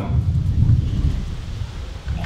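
Low rumbling wind noise buffeting an outdoor microphone, fading toward the end.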